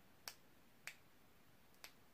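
Near silence: quiet room tone with three faint, short clicks, about a quarter second in, just under a second in, and near the end.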